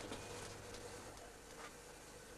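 Faint, steady electrical hum from a lit circular fluorescent light.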